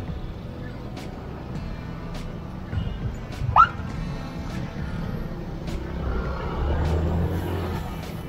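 Motorbike ride through slow city traffic: steady low engine and road rumble, with a short rising chirp about three and a half seconds in and the rumble swelling near the end.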